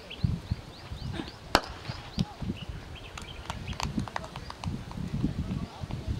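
Birds chirping with short, repeated rising calls. About a second and a half in comes a single sharp crack, the cricket ball striking the bat, followed by a few lighter clicks.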